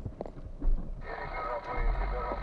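A few sharp irregular clicks, then about a second in a car radio comes on through the cabin speakers, playing a voice or music that sounds thin and narrow.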